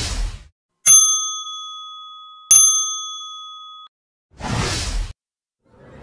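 End-card sound effects: a short whoosh, then two bright bell dings about a second and a half apart, each ringing out and fading, then another whoosh.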